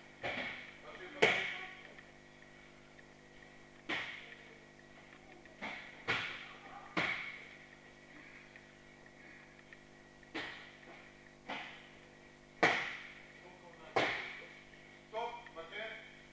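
Bodies being thrown onto judo tatami mats during practice: about ten sharp thuds and breakfall slaps, spaced one to a few seconds apart, each echoing briefly in the hall. Brief voices come near the end.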